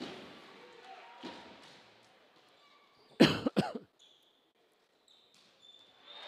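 A loud double cough close to the microphone about three seconds in. Before it come faint, echoing thuds of a volleyball being played in a sports hall.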